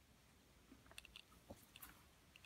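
Near silence, with a few faint, short clicks and taps in the second half.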